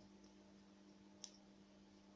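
Near silence with a faint steady hum, broken about a second in by one sharp click of small metal scissors snipping yarn.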